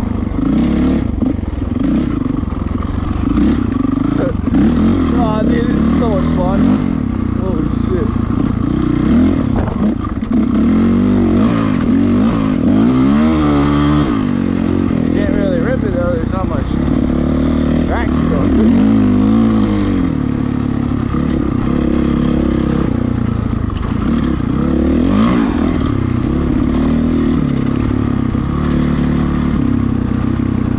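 2008 Honda CRF450R's single-cylinder four-stroke engine revving up and down over and over as the dirt bike is ridden at speed.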